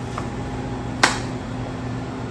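Steady low mechanical hum of the room, with a single sharp click about a second in.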